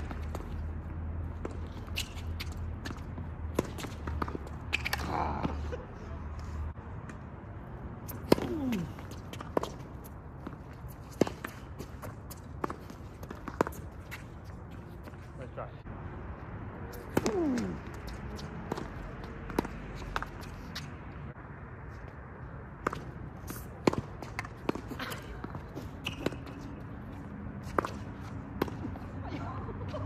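Tennis balls being struck by rackets and bouncing on the court during a rally: a string of sharp, irregular pops, one every second or so.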